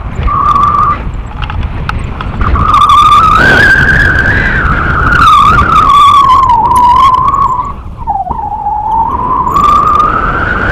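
Wind rushing over a camera microphone during a tandem paraglider flight, with a steady whistle that slowly wavers up and down in pitch and dips sharply about eight seconds in.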